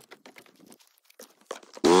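Faint scuffs and clicks, then near the end an ATV engine starts suddenly, its pitch rising briefly as it catches before it settles into a steady run.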